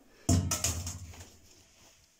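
A single sudden thump about a quarter second in, followed by a rustling tail that fades away over about a second.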